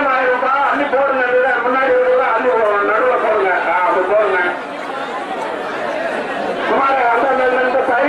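A man's voice announcing over a horn loudspeaker, with crowd chatter underneath. It eases off briefly around the middle.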